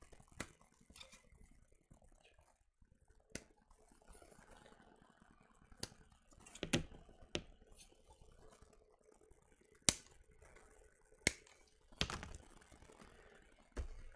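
Scattered sharp clicks and light taps of hard plastic, about ten over the stretch with the sharpest two around the tenth and eleventh seconds: a plastic model-kit sprue and its parts being handled and set down on the desk.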